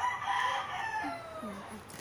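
A rooster crowing once: one long call lasting about a second and a half that sags slightly in pitch toward its end.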